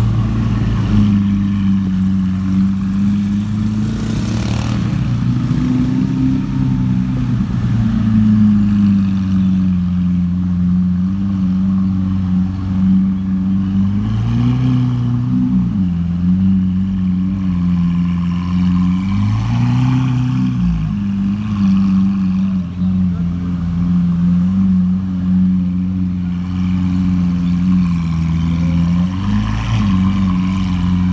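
Lamborghini supercar engine idling steadily close by, with a few brief blips of the throttle that raise the revs for a moment, about four seconds in, twice around the middle, and near the end.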